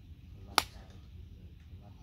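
A driver strikes a teed golf ball: one sharp click about half a second in.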